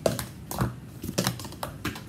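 Speed Stacks plastic sport-stacking cups clacking as they are rapidly stacked and unstacked by hand and set down on the table, about six sharp clatters in two seconds at an uneven pace.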